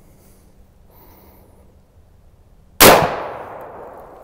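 A single shot from a 7.62x51 rifle firing a German AM32 plastic-bullet training round, nearly three seconds in. The report is loud and sudden, with an echo that fades over about a second.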